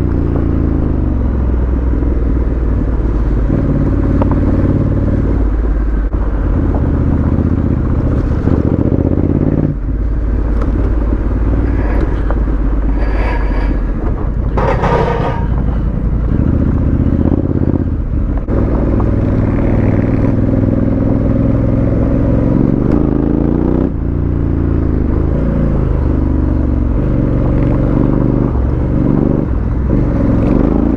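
Honda CRF1100L Africa Twin's parallel-twin engine running on a gravel mountain track, its note rising and falling in steps with throttle and gear changes. A couple of short noisy bursts come around the middle.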